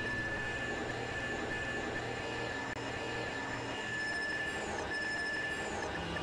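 Dense layered electronic drone music: several held synth tones, a steady high one among them, over a low hum, with a few short falling high glides near the end.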